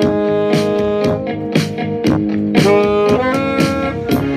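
Saxophone playing a slow melody of held notes, with one note scooped up into about two-thirds of the way through, over a karaoke backing track with a steady drum beat.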